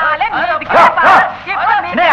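Several people shouting and crying out in high, yelp-like voices whose pitch rises and falls sharply, with two short hissing sounds about a second in.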